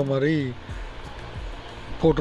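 A man's voice for the first half second, then a steady, quieter background hiss with a low rumble.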